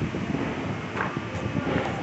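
Steady low machine noise from an industrial paper guillotine running, with a brief rustle of paper sheets about a second in.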